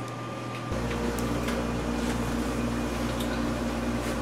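A steady low mechanical hum that starts abruptly about a second in.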